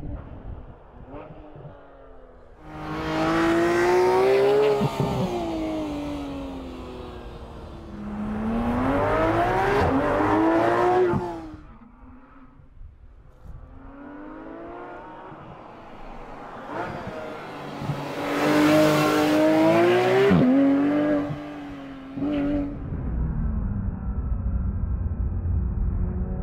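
Porsche 911 GT3 RS's naturally aspirated flat-six engine driven hard, in three loud runs in which the engine note climbs in pitch and then drops away. Between the runs the engine is quieter, and near the end a deep low rumble builds.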